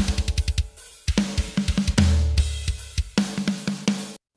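Metal drum kit played back uncompressed through a parallel compression bus with its compressor bypassed. The mix is mostly kick and snare, with the cymbals and room mics turned down and the kick a little lower. A quick run of drum hits opens it, and a deep sustained hit lands about halfway, followed by more strikes.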